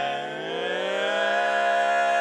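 Barbershop quartet singing a sustained four-part chord a cappella. The chord dips briefly, then slides up, swells louder and holds steady, ringing with many overtones.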